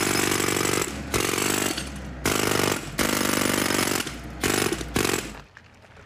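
Jackhammer breaking up asphalt in a pothole, running in about six short bursts of rapid blows with brief pauses between, then stopping a little before the end.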